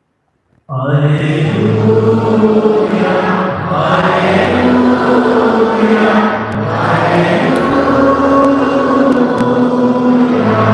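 A church choir starts singing a slow hymn about a second in, after a brief silence, with long held notes that carry on through the rest.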